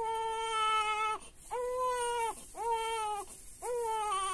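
Newborn baby crying in four wails of about a second each with short breaths between, while being handled during a doctor's examination.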